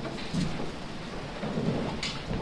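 Low rumbling background noise with a faint knock about half a second in.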